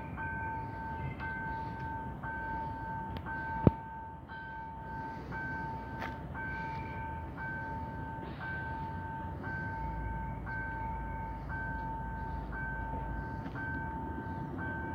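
Electronic level-crossing warning signal sounding: a two-tone beep pulsing steadily about twice a second while a train approaches. A sharp click about three and a half seconds in, and a low rumble joins near the end.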